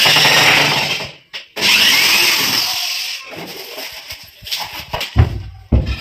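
Handheld electric drill running in two loud bursts, the first about a second long and the second about a second and a half and fading out. Near the end come two thumps as the wooden cupboard doors are pressed shut.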